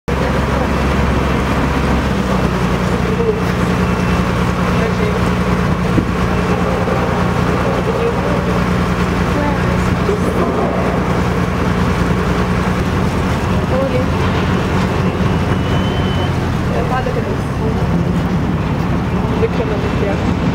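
Motorboat engine running steadily, a loud low drone with a steady hum whose pitch steps up slightly about two seconds in and eases back near the end.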